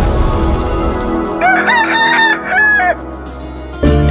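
A rooster crows once, about a second and a half in, over a fading musical sting. Music starts up again near the end.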